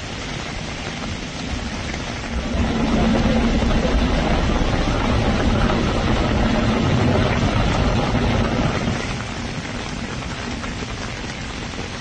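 A car driving through a street flooded with water and hail slush, with a steady rush of water and an engine hum. It swells for several seconds in the middle as the car passes.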